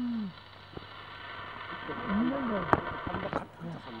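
Brief snatches of a voice speaking, separated by quieter gaps, over a steady background hiss; a single sharp click comes a little before the end.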